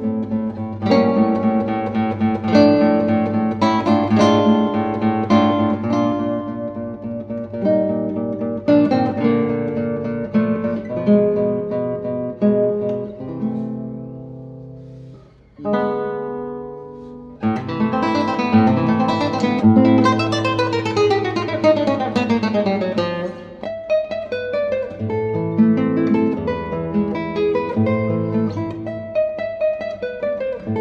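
Solo nylon-string classical guitar played fingerstyle, with many plucked notes and chords. About halfway through the sound dies away almost to silence, then the playing starts again a second or two later with quick runs of notes.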